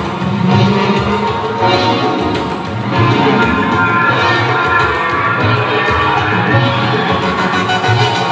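Live electronic music with layered synthesizer tones over a pulsing low beat, with a crowd cheering and shouting over it.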